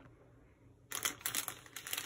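Clear plastic bag of garlic chives crinkling as it is handled, a dense run of crackles starting about a second in.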